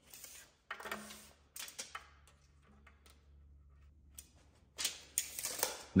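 Tape measure being pulled out and handled for a measurement: a few scattered clicks and rattles, with a denser run of them near the end.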